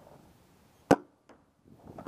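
A single sharp paintball marker shot about a second in, with a faint click a moment later.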